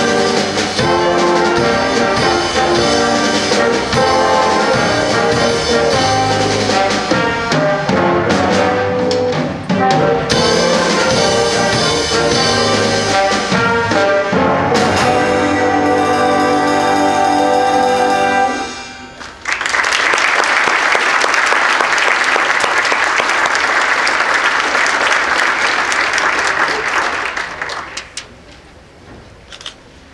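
High school stage band with saxophones, trumpets, trombones, piano, guitar and drum kit playing the close of a Latin-jazz number. It ends on a held final chord that stops about 18 seconds in. An audience then applauds for about eight seconds, and the applause dies away near the end.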